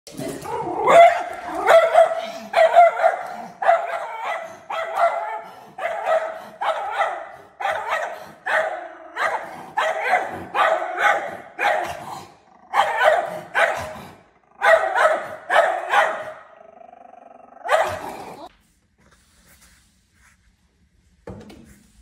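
A schnauzer barking repeatedly at a black bear outside a glass door, about one to two sharp barks a second. The barks stop about eighteen seconds in.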